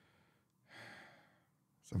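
A man's single soft breath, about a second in and lasting about half a second, otherwise near silence.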